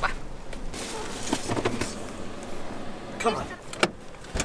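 Rushing noise inside a 4x4's cabin, with a few light clicks, then a sharp click near the end as the rear door's inside handle and latch are pulled.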